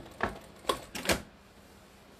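A few irregular sharp clicks and knocks in the first second or so, some with a brief squeak, as gloved hands are shifted on the quilt at the quilting machine while it is paused.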